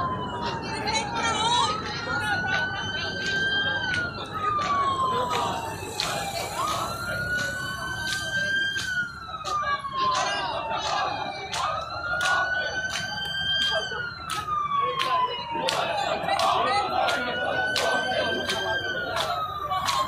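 Police siren on a slow wail: the pitch climbs, then slides slowly down, a cycle about every five seconds. Many short sharp clicks or claps sound throughout.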